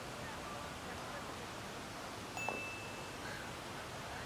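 Quiet outdoor ambience: a steady low hiss, with a faint knock and a brief high ringing tone about two and a half seconds in.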